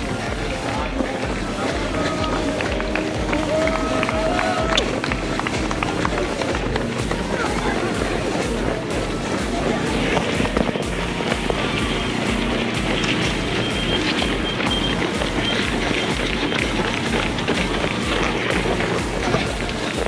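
Running footfalls in a quick steady rhythm, picked up through a handheld camera carried by a marathon runner, with the surrounding hubbub of other runners and spectators' voices.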